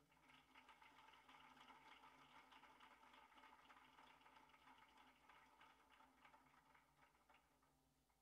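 Faint applause from a congregation, a dense patter of clapping that thins out and dies away over about seven seconds.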